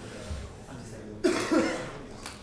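A person coughs twice in quick succession, a little over a second in.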